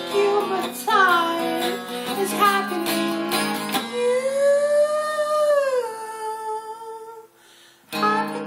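A man singing over a strummed acoustic guitar in a freestyle, improvised song. About halfway through he holds one long note that rises and falls while the guitar chord rings out, and both fade to a brief pause before the playing starts again right at the end.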